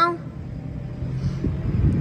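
Diesel engine of farm machinery running with a steady low hum, getting a little louder toward the end.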